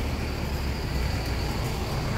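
Street traffic: a steady low rumble of vehicle engines under an even wash of city noise.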